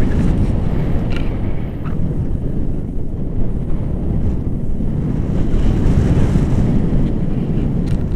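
Wind rushing over the camera microphone in tandem paraglider flight: a loud, steady low rumble, with a couple of faint clicks in the first two seconds.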